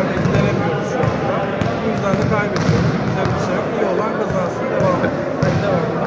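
A man laughing amid voices talking, with scattered thuds of a ball striking the court floor in the background.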